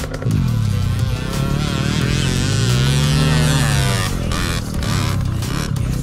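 Dirt bike engine revving: a short rev in the first second, then a longer swell that rises and falls in pitch in the middle.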